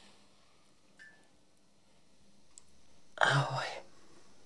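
Mostly quiet room tone, then near the end a woman briefly exclaims 'Bože' ('God').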